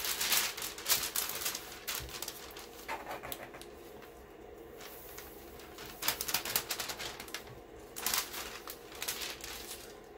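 Parchment paper rustling and crinkling as it is lifted, folded and laid flat, in irregular bursts that are loudest in the first two seconds.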